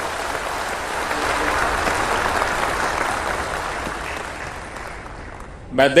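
Large audience applauding, swelling to a peak about two seconds in and dying away; a man's voice starts again right at the end.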